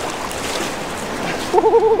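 Surf washing and water splashing in the shallows as a shark is hauled by its tail through the wash. Near the end a person's wavering, drawn-out vocal sound comes in over it.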